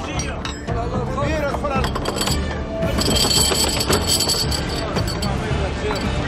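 Fishermen's voices calling out on deck over a steady low rumble, with metallic clinking from about halfway through; background music runs underneath.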